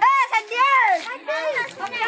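Children's voices shouting and calling out in high, rising-and-falling tones, several at once.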